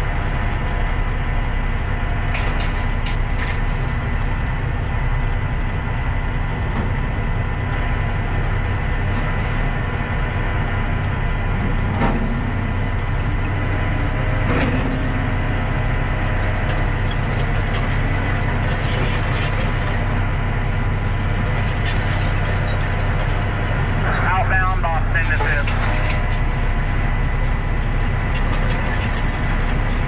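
Heavy diesel dump truck engine idling steadily, heard from inside the cab, with two short knocks about twelve and fourteen seconds in.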